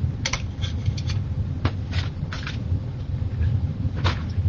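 A few light clicks and taps, as of things handled and set down on a work table, over a steady low rumble.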